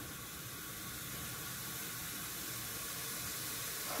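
Tomato, chickpeas and spices frying in oil in an aluminium pressure-cooker pot: a soft, steady sizzle.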